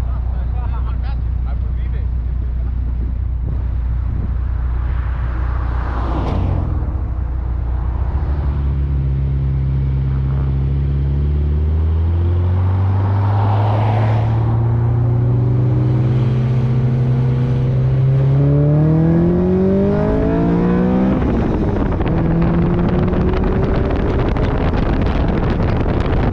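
Car engine idling, then revving up as the car pulls away and accelerates. Its pitch holds steady for a stretch, climbs steeply, then drops back at a gear change near the end.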